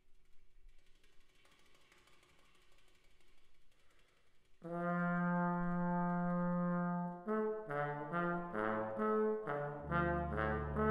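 Small brass ensemble with tuba and trombone playing live. After a few seconds of faint room hiss, a loud held chord enters about halfway through, then breaks into shorter moving notes, with a deep bass note coming in near the end.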